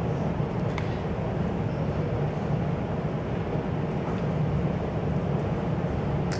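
A steady low rumble of room noise, even and unchanging, with no speech.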